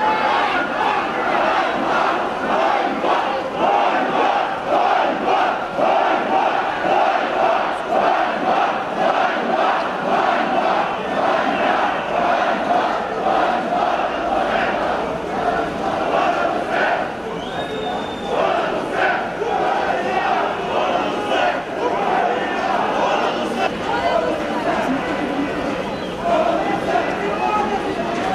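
A large crowd shouting, many voices at once without a break.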